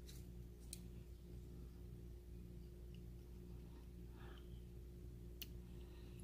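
Near silence with a faint steady hum, broken by a few faint clicks as a small screwdriver works the tiny screws of a dial test indicator's case.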